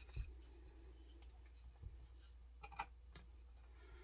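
Near silence with a few faint, short clicks from hands handling a Homelite XL-76 chainsaw while a new crank seal is pushed onto the crankshaft by hand, over a faint low hum.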